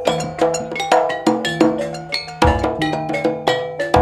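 Javanese gamelan playing: bronze bonang kettle gongs and metallophones struck in a quick, even run of ringing notes, about three to four a second. A deep low stroke comes in about halfway through and again at the end.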